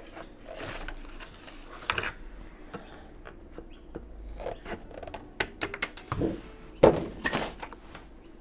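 Craft materials being handled on a desk: a plastic acetate sheet and film slides moved about, with scattered rustles and small knocks. A sharp knock near the end is the loudest.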